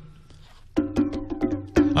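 Korg Wavedrum Mini electronic percussion pad tapped by hand. A ring dies away, then from just under a second in comes a quick run of about five strikes, each a short pitched drum tone that rings on.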